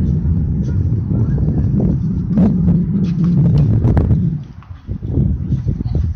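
Tennis ball struck by rackets during play: a few sharp hits in the middle, over a loud, steady low rumble.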